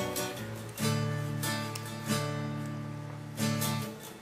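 Background music on acoustic guitar: strummed chords that ring on, with a new strum about every second.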